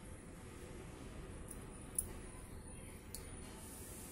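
Faint, quiet handling as spoonfuls of cooking oil go into a cold nonstick frying pan, with three light clicks of a spoon against the pan, the sharpest about two seconds in.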